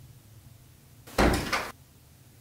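An interior door is pushed shut about a second in: a short, sudden clatter of the door and its handle and latch, with two or three quick knocks.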